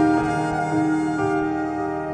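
Violin and piano playing together: a bowed violin line over piano notes struck every half second or so, getting a little quieter across the two seconds.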